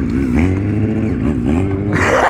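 Sport motorcycle engine running through a wheelie, its revs rising and falling several times as the throttle is worked to keep the front wheel up.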